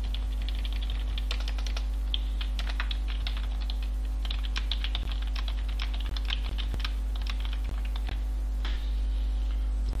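Typing on a computer keyboard: a run of quick, irregular key presses over a steady low hum.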